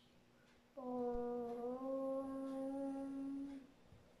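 A child's voice chanting one long, steady "Om" that starts just under a second in and lasts about three seconds.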